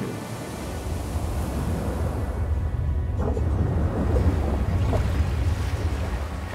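Wind and sea: a deep, steady rumble of wind and waves that builds gradually and is strongest near the end.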